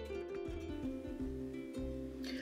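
Background music with plucked notes over a low bass.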